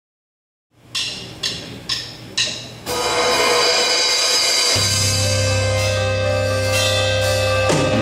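Live band starting a song: four evenly spaced percussive strikes about half a second apart count it in, then the band comes in with sustained chords, and a deep bass note joins about halfway through.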